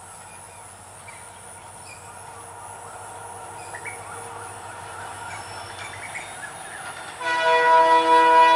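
Passenger train led by a WDP4 diesel locomotive, its running sound faint and slowly growing louder as it approaches. About seven seconds in, the train's horn starts, loud and steady.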